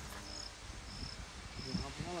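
Crickets chirping in short, high-pitched pulses, about one every half second to a second, over faint open-air background.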